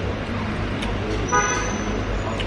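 A short vehicle horn toot, one flat held note lasting about half a second, starting a little past the middle, over steady street traffic noise.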